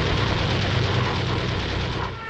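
A steady, loud roar of a propeller aircraft's engine with a low drone, mixed with background music.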